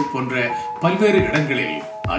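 A man talking over background music that holds sustained single notes.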